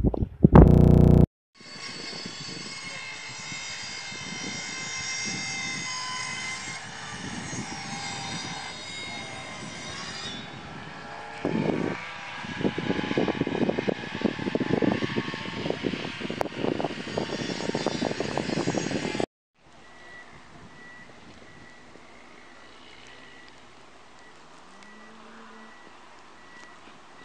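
A steady engine drone with a high whine, joined about halfway through by gusty crackling. After a sudden cut it gives way to a much quieter background with a faint repeating high tone.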